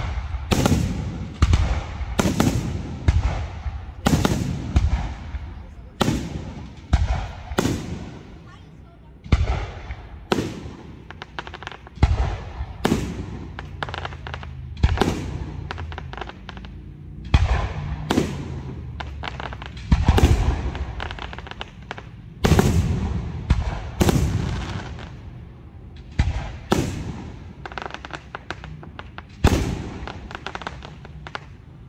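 Aerial display firework shells bursting in quick succession, a sharp bang every second or so, each followed by a rolling echo.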